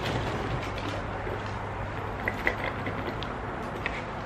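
Faint rustling and a few small clicks of objects being handled in a cardboard box of odds and ends, over a steady low hum.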